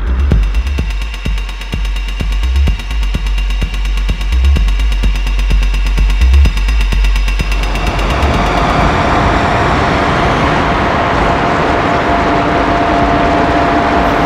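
Electronic dance music played live on a Eurorack modular synthesizer. It starts with a heavy sub-bass and a fast ticking pulse. About eight seconds in, the bass and ticks drop out and a loud noisy wash with a single held tone takes over.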